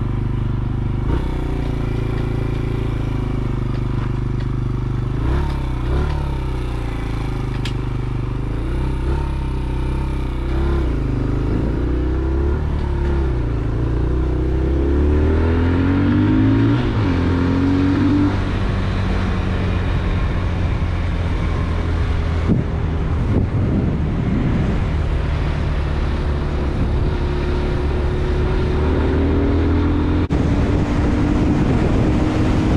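Motorcycle engine running as the bike is ridden along, its pitch climbing through the gears and stepping down at gear changes, with the strongest climb about halfway through.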